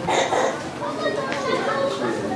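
Several people's voices talking in a large hall, with no single clear speaker.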